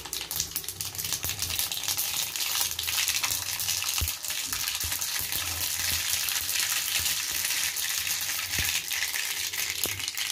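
Hot oil sizzling and crackling steadily in an iron kadai, heating for deep-frying vadas. A low hum runs underneath, and there are a couple of soft thumps.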